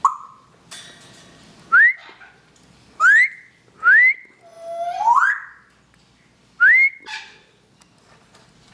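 Lilac-crowned Amazon parrot whistling: a short whistle at the start, then a series of quick upward-sweeping whistles about a second apart. About five seconds in comes a longer one that rises from a lower pitch.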